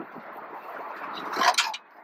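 Steady open-air background noise that swells about one and a half seconds in into a short scrape and rattle, as a fishing rod is pulled from its holder on the boat's rail to set the hook on a bite.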